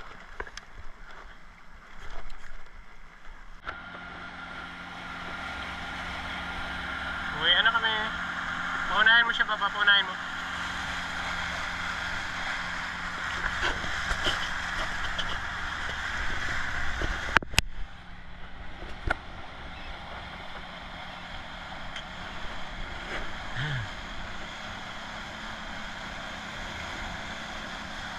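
Yamaha outboard motor running steadily as the boat travels under way, with water rushing past the hull; the engine hum comes in about four seconds in. Two brief bursts of high calls that rise and fall in pitch stand out around eight and ten seconds, and a sharp click comes about halfway through.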